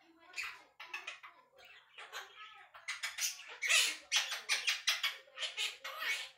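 Quaker parrot chattering and mumbling to itself in quick, squeaky bursts mixed with smacking kiss sounds, busiest and loudest in the second half.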